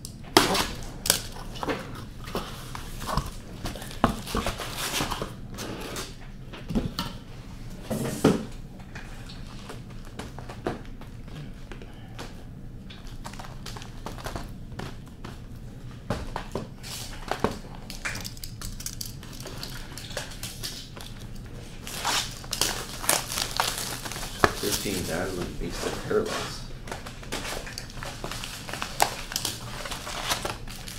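A cardboard shipping case being cut open with a box cutter, then cardboard boxes of trading cards pulled out and set down on a table. The result is a run of irregular sharp taps, scrapes and cardboard crinkles.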